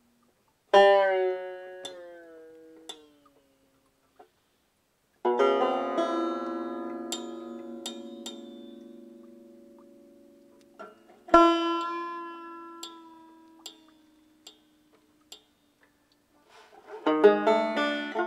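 Five-string banjo played in free improvisation: three chords struck and left to ring out slowly, with light string clicks between them, then a quick run of picked notes near the end.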